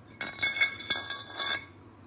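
Machined aluminium engine mount plate being pushed onto a tapered steel shaft: metal-on-metal scraping and light clinks with a high ringing, lasting about a second and a half.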